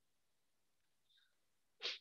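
Near silence, then near the end one short, sudden breathy burst from a person, like a sharp sniff or snort.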